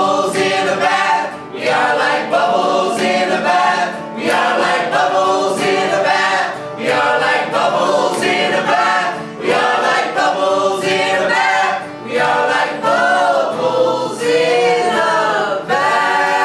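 A group of male and female voices singing a folk song together, with an acoustic guitar strummed underneath, in phrases of about two seconds with short breaks between them. Near the end the voices settle into a long held chord.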